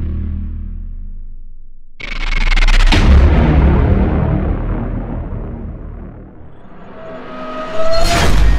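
Cinematic outro music and sound effects: a sudden deep boom about two seconds in that slowly fades, then a rising whoosh building into another hit at the end.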